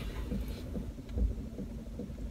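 Low steady hum and rumble inside a car's cabin, with faint small knocks and a soft low thump about a second in.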